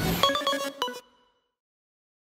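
Short electronic logo jingle: a quick run of bright, plucked synthesizer notes that ends about a second in.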